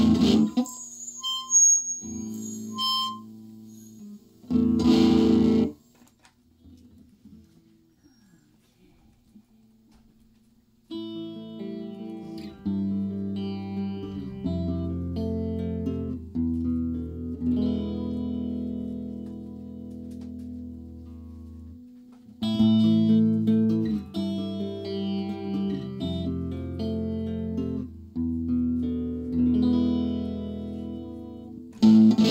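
Electric hollow-body guitar playing through an amplifier. A few sparse notes and one short loud strum come first, then a few seconds of near quiet. Sustained ringing chords follow and get louder about two-thirds of the way through.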